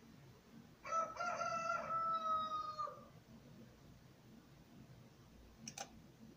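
A rooster crowing once, a call of about two seconds starting about a second in, followed near the end by a single sharp click.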